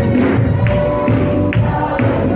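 Church choir of mixed voices singing a gospel hymn in unison over instrumental accompaniment, with a steady percussive beat about twice a second.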